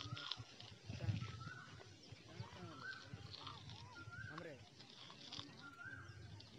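A bird calling over and over, one short clear note about once a second, faint.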